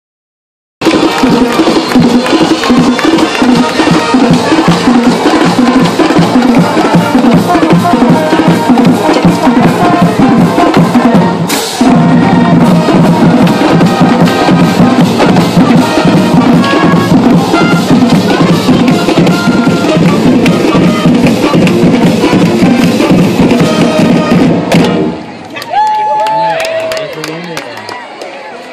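High school marching band playing a fight song loudly in the stands: brass with sousaphones and a drumline beating out a steady driving rhythm. The band cuts off about 25 seconds in, leaving a few shouts.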